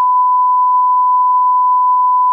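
A censor bleep: one steady, unbroken pure tone covering the spoken name of the new shoe.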